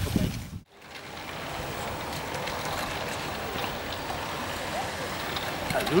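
A steady, even rushing noise of outdoor ambience, starting about a second in after a brief cut-out of the sound.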